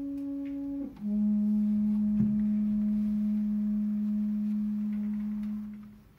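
French horn playing a soft falling phrase, then holding a long, steady low note that fades away near the end: the closing note of the piece.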